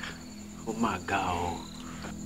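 A man crying out in anguish, a wavering, falling 'oh' in two stretches starting a little under a second in. Behind it runs a steady, high-pitched pulsing trill of crickets.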